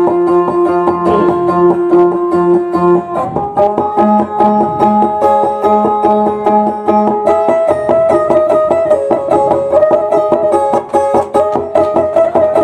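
Instrumental plucked-string music of a dayunday: fast, repeated picking over steadily held notes, with the tune moving to a new, higher register about three seconds in.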